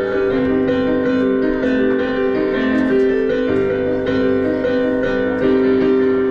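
Stage keyboard played with a piano sound: a slow passage of held chords, the notes changing every half second or so.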